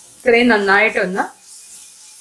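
A short spoken phrase about a quarter of a second in, over the faint sizzle of sliced onions frying in a pan.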